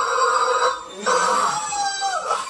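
Yellow rubber chicken toy squawking in two long, steady squeals, with a short break just before one second in.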